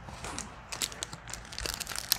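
Snack bar wrapper crinkling as it is handled and opened by hand: a run of quick, irregular crackles that grows denser toward the end.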